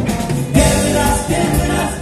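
Live rock band playing, with electric guitars, bass, drums and keyboard, and a voice singing over them.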